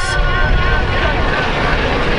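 City street background noise: a steady low rumble with hiss between words of an address.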